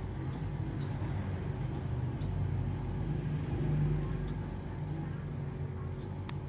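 A steady low machine hum, swelling slightly a little under four seconds in, with a few faint clicks over it.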